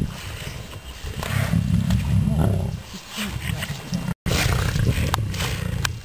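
Lions growling low and rumbling while feeding on a nyala carcass. The sound drops out completely for a moment a little after four seconds.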